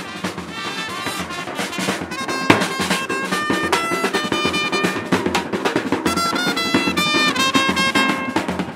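Brass band playing with a bass drum: trumpets holding and stepping between notes over regular drum beats, with one sharp drum hit about two and a half seconds in.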